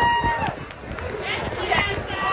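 Two singers holding the final sung note of a duet, which stops about half a second in; then outdoor crowd noise with scattered voices.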